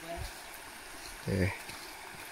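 Shallow river water flowing over stones, a faint steady rushing.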